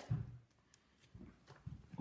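Quiet handling sounds of raw cuts of venison being set down and moved on a table: a soft low thump at the start, then a few light knocks about a second in and near the end, with near-silence between.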